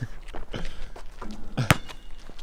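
Basketball play on an outdoor asphalt court: a few soft thuds of the ball and feet, then one sharp knock near the end as the shot ball strikes.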